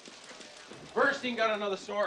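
Quick footsteps on a hard floor from a film soundtrack. About a second in, a man's voice starts speaking.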